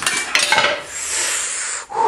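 A tool prying and scraping at the camshaft end cap on a Honda L15 cylinder head: a few sharp metal clicks, then about a second and a half of steady scraping as the cap is forced off.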